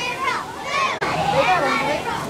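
Children's voices calling and shouting, too indistinct to make out words.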